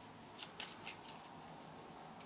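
Small deck of game cards handled between the fingers, giving three short, faint card rustles in the first second or so.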